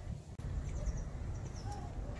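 A small bird chirping outdoors: two quick runs of short, high, downward-sliding notes about a second apart, over a steady low rumble.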